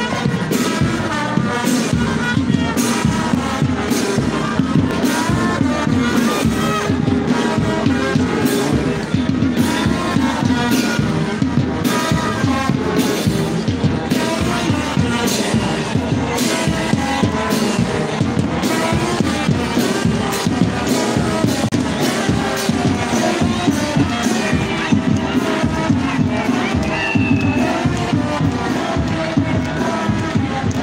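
Brass marching band playing a march with a steady drum beat, about two beats a second, over crowd noise.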